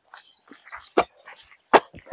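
A hand digging tool chopping into dry, sandy soil while a planting pit is dug: a few sharp strikes, the loudest two about three-quarters of a second apart.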